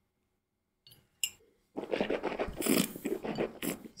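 A wine taster sipping old port and slurping air through it in his mouth: an irregular wet slurping and swishing that starts about two seconds in, after a faint click.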